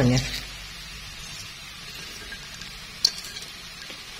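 Stir-fried instant noodles with beef and onion sizzling softly and steadily in a stainless-steel pan, with one sharp click about three seconds in.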